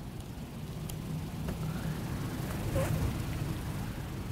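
Steady low hum of a meeting room, with a few faint clicks from a laptop keyboard as the slide is advanced.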